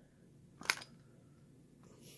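Quiet handling of the just-separated gearbox housing of a drywall screwdriver, with one short, sharp click a little under a second in.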